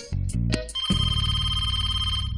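A short music cue, then a telephone ringing with a steady ring from just under a second in.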